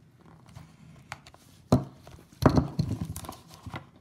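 A small cardboard trading-card box being cut open and handled: a utility knife slitting its paper seal, a sharp click a little before the middle, then about a second of clustered clicks and cardboard scraping as the box is pulled apart.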